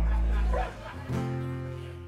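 Acoustic band music turned down quiet: a held chord over a deep bass note, which cuts off about half a second in, then a new chord struck about a second in and left to ring and fade.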